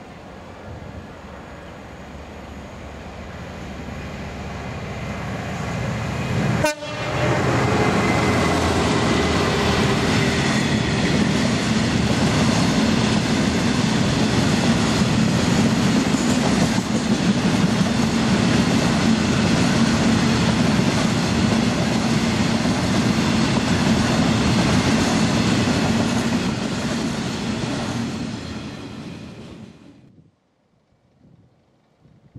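A Class 66 diesel locomotive hauling a coal train approaches, growing steadily louder until it passes at about seven seconds. A long rake of coal hopper wagons then rumbles and clatters past for about twenty seconds before the sound falls away near the end.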